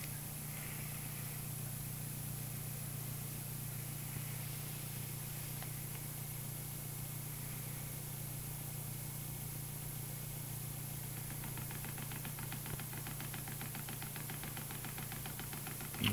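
Homemade pulse motor running fast with a steady low hum. From about two-thirds of the way through, a fast, even light ticking joins it; the builder puts this down to the rotor clipping the side of the enclosure, which scrubs off some of the output voltage.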